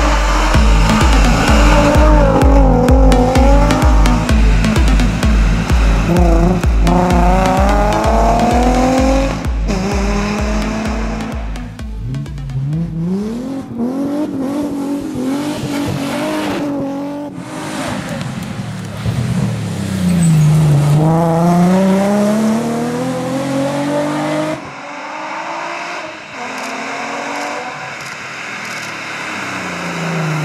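Nissan 350Z rally car's V6 engine revving hard, its pitch climbing and falling again and again as the car accelerates and lifts off through a stage. Music with a steady pounding beat plays under it for the first half.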